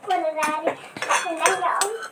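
Light clinking of dishes and cutlery, a few sharp clicks, with a voice talking in the background.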